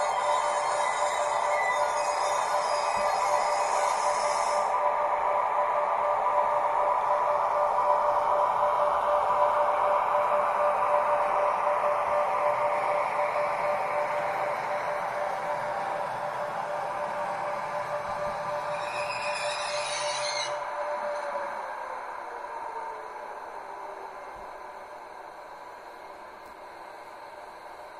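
Digital sound decoder in an H0 model ICE playing a synthesized electric-train running sound through its small speaker: a steady electric whine, with a brief high burst about 19 seconds in, after which the whine drops in pitch. The sound grows fainter over the second half as the model drives away.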